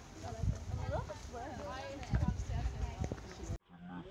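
Indistinct voices of people talking, with irregular low rumbling bursts on the microphone; the sound drops out abruptly near the end.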